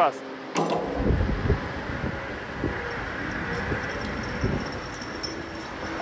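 Large Caterpillar wheel loader's diesel engine running steadily while it holds a steel rotor slung on chains from its bucket, with a sharp click about half a second in.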